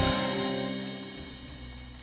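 A live folk band's closing chord rings out and fades away steadily after the song's final beat, with held notes from the ensemble dying over about two seconds.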